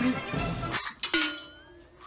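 Background music, then about a second in a single bright ding that rings on and fades out, in the manner of an edited-in sound effect.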